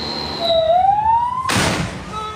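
Ambulance siren, heard from inside the vehicle, rising steadily in pitch, then cut across by a sudden loud blast about one and a half seconds in as an explosion goes off just ahead.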